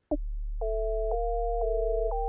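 Hydronexius 2 workstation rompler, reset to its default sound, playing back a short recorded MIDI loop. It gives plain, pure tones: a steady low bass note under two-note chords that change about every half second.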